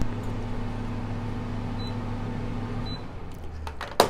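Low steady hum that cuts off about three seconds in, followed by a few light clicks.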